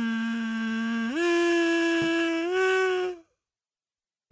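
A kazoo played with three held notes, each higher than the last, stopping about three seconds in.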